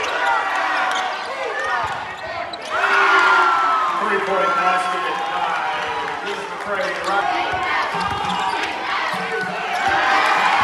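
A basketball being dribbled on a hardwood gym floor, under indistinct shouting and voices from players and spectators in the gym.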